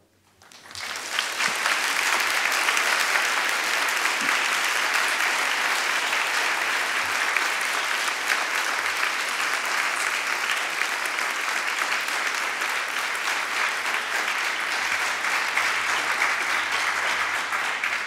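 Audience applauding in a large hall: the clapping builds over the first second or so, holds steady, and dies away right at the end.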